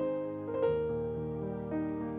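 Background music: slow, soft piano, a new note or chord struck about every half second and left to ring.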